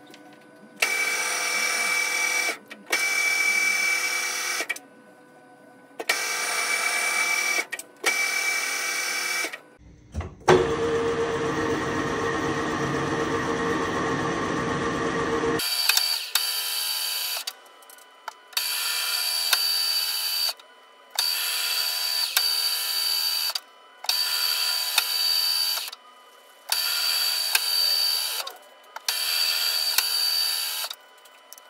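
Metal lathe cutting a 1.5 mm-pitch thread at low spindle speed, running in repeated passes of about two seconds with short pauses between them. About ten seconds in, a different, steadier and deeper running sound lasts for about six seconds before the on-off passes resume.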